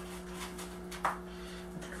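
Hands pressing and smoothing gritty lava-rock and pumice bonsai soil in a pot, a faint rubbing over a steady low hum.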